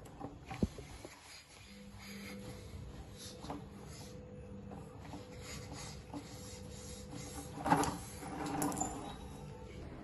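Faint strokes and handling clicks of a small hand air pump inflating a balloon through a straw, over a low steady hum. Near the end a louder rush of air as the balloon is let go and deflates through the straw, driving the balloon car.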